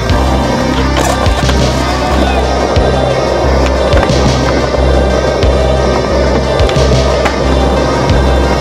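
Skateboard wheels rolling over concrete and wooden boards, with several sharp clacks of the board landing and hitting the ground, over a synth music track with a pulsing bass.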